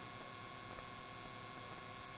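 Faint, steady hiss of an idle radio and recording channel, with a constant high-pitched hum tone running through it.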